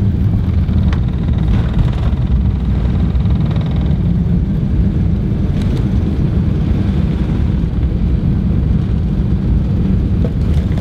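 Jet airliner cabin noise heard from inside the cabin: a loud, steady low rumble of engines and airflow as the plane speeds past runway lights.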